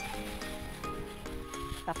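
Background music: a melody of steady notes changing about every quarter second, under a faint crinkling of plastic food-handling gloves as hands roll dough into a ball.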